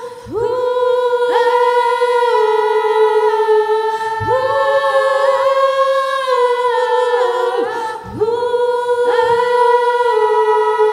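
A group of female voices singing a cappella in close harmony, holding long chords. The voices break off briefly and slide back in on new chords just after the start, about four seconds in and about eight seconds in.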